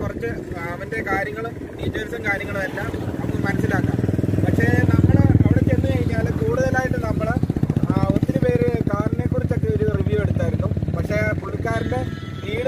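A man talking, over the low rumble of a motor vehicle engine that builds to its loudest about five seconds in and fades away near the end.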